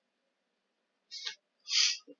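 Near silence, then two short breathy hisses in the second half, the second louder: a person's breath or mouth sounds at the microphone.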